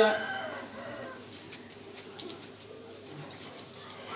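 A voice breaks off just after the start, leaving the low background of a seated crowd, with faint distant voices and faint bird calls.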